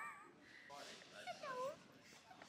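A short high-pitched vocal call, dipping and then rising in pitch, about one and a half seconds in, after the tail of a spoken word at the start.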